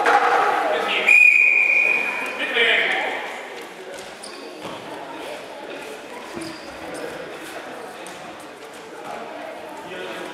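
A referee's whistle blown once, about a second in: a steady, high tone held for just over a second that starts the wrestling bout, over voices echoing in a large sports hall.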